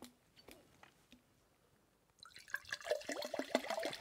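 About halfway through, water starts gurgling and glugging in a handheld plastic bottle, a quick run of small clicks and gurgles after a near-silent start.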